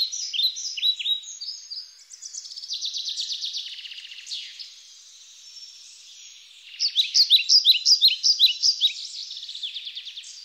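Small birds chirping: quick downward-sweeping chirps, a buzzy trill from about two to four and a half seconds in, and a fast, louder run of chirps from about seven seconds in.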